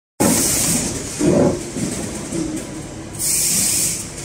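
A fruit-and-vegetable counting and netting machine running: produce tumbling from a stainless steel hopper onto a cleated conveyor belt, with a steady low rumble and knocking, a louder thump a little over a second in. A high hiss sounds at the start and comes back about three seconds in.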